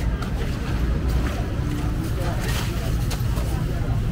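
Busy market ambience: a steady low rumble under faint, indistinct voices of the crowd, with a few light knocks.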